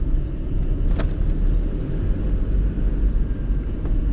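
Car running and road noise heard from inside the cabin while driving, a steady low rumble, with a single sharp click about a second in.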